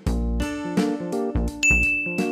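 Light background music with short plucked and keyboard-like notes over a bass beat. About one and a half seconds in, a high chime sound effect comes in and holds a steady ringing tone.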